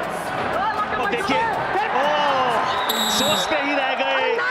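A man's commentary over steady arena crowd noise, with a short high-pitched tone about three seconds in.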